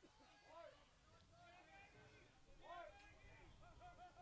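Near silence with faint, distant voices calling out on a soccer field, over a low rumble.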